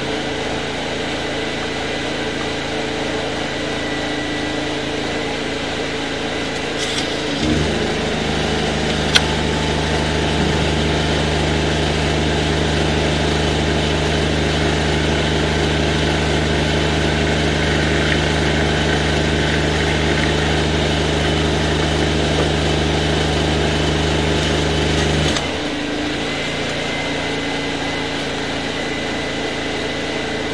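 A drain-clearing machine's engine running steadily. About seven seconds in, a louder, deeper drone joins it and runs on until it cuts off sharply a few seconds before the end, with a single sharp click shortly after it starts.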